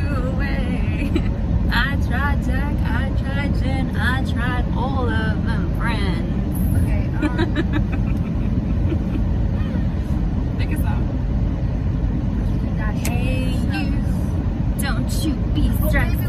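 Steady low rumble of a car's cabin, under women's voices talking and laughing over the first several seconds and again near the end.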